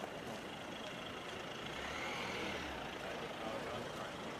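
Outdoor street traffic noise with a vehicle passing by, its sound swelling about halfway through and then fading.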